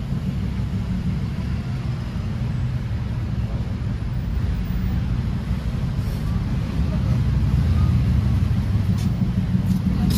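Busy street ambience: a steady low rumble of city traffic, with indistinct voices of passers-by and a few light clicks near the end.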